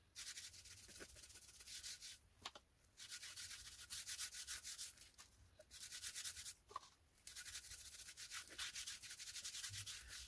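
A hand rubbing oil into a wooden karlakattai (Indian club) in rapid back-and-forth strokes, a faint rhythmic hiss of skin on oiled wood that stops briefly a few times.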